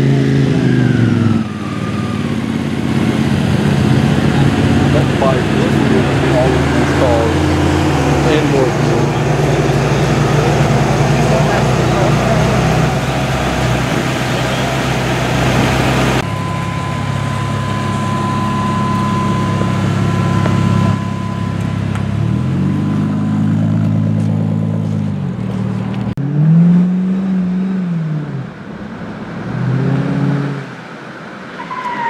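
Ferrari 348's V8 engine idling, blipped so the revs rise and fall just after the start and twice more near the end; the last rev is the loudest.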